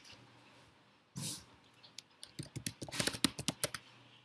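Typing on a computer keyboard: a quick run of keystrokes in the second half, after a short rush of noise about a second in.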